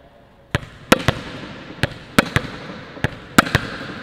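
A volleyball bouncing on a hard court and being slapped into the palm with a snap of the wrist: about nine sharp smacks, some in quick pairs, each ringing on in an echoing hall.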